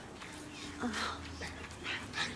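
Faint, broken voices of several distressed people: short utterances and breaths.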